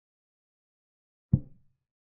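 A single short, dull knock of a chess piece being set down on a board, the move sound effect of a chess-board animation, about a second and a quarter in.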